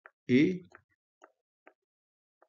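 A man's voice says a single short word, "a", then near silence broken by three faint, short clicks.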